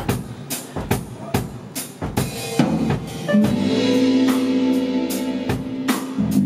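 Live band with a drum kit keeping a steady beat of about two hits a second. A held chord comes in about halfway through and lasts about two seconds.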